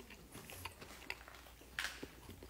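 A person chewing a mouthful of dakgangjeong, crispy sweet-glazed Korean fried chicken: faint, scattered crunches and mouth clicks, the loudest crunch near the end.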